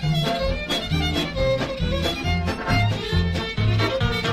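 Old-time Ukrainian-style polka recording: a fiddle plays a quick melody over a steady bouncing bass beat from the backing band.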